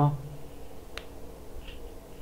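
A single sharp click about a second in, against low room noise, after a man's voice trails off at the start.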